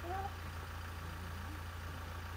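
Safari vehicle's engine idling with a steady low rumble.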